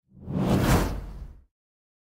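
A single whoosh sound effect that swells up and fades away over about a second and a half.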